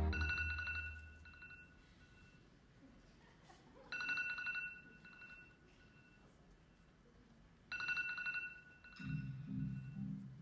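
A telephone ringtone, a short trilling electronic ring heard three times about four seconds apart, each leaving a fading tone. A lower pitched sound begins near the end.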